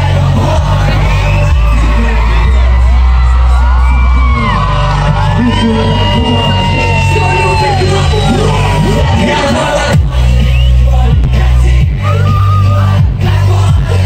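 Live pop concert music through a loud PA, with a heavy bass and the audience whooping and yelling over it. About ten seconds in the bass drops out for a moment and a pounding beat comes in.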